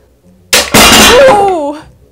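A solid-pine miter joint snapping under load, and the stacked steel weight plates crashing down onto the wooden bench. It is a sudden, loud crash about half a second in, ringing on for over a second.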